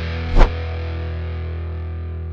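Outro music: a sustained chord on a distorted electric guitar, with one sharp loud hit about half a second in.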